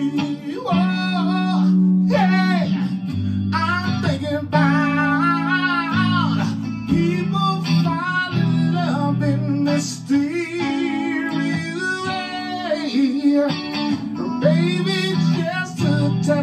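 A man singing live, his voice bending and sliding through long phrases, over chords played on an electric guitar.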